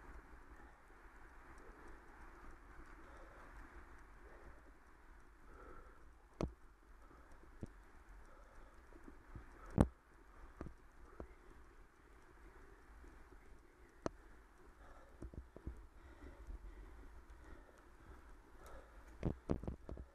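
Bicycle riding along a town street: a low, steady rumble with a faint background hum, broken by a few sharp clicks or knocks, the loudest about ten seconds in and a quick cluster near the end.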